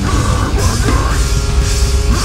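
Deathcore band playing live at full volume: heavily distorted guitars and a pounding drum kit with crashing cymbals, under harsh screamed vocals.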